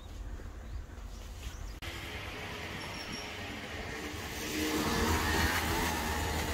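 A low rumble, then after a sudden cut about two seconds in, small go-kart engines running on a kart track. One gets louder from about halfway through as a kart comes closer.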